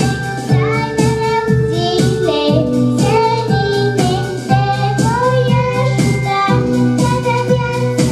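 A young girl singing a melody into a microphone over instrumental accompaniment with a steady beat of about two strokes a second.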